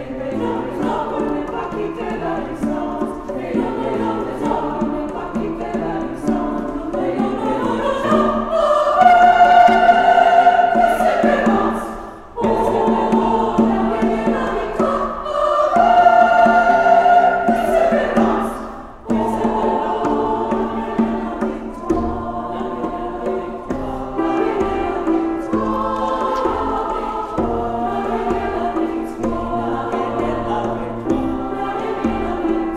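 A choir singing a cappella-style chords in several parts, swelling twice to loud held chords that are cut off sharply.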